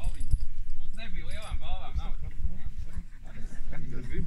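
Wind buffeting the microphone in gusts, with a high-pitched, wavering voice-like call for about a second and a half in the middle.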